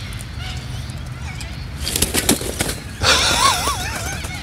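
A man laughing in the last second, a sudden high, wavering laugh. About two seconds in there is a short harsh burst, likely from the parrots beside him.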